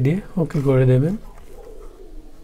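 A man's voice: the tail of a word at the very start, then one drawn-out, hum-like filler syllable lasting about a second.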